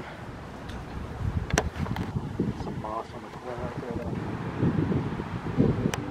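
Wind rumbling and buffeting on the microphone outdoors, with a few short, faint voice-like sounds in the background partway through.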